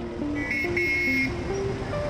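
Busy road traffic of motorcycles and scooters, with a vehicle horn honking twice in quick succession, high-pitched, about half a second and a second in. A simple melody of background music plays under the traffic.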